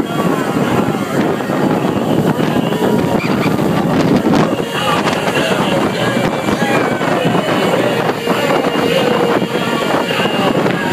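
Open-deck speedboat running at high speed: a loud, steady rush of wind on the microphone, spray and engine, with passengers' voices over it.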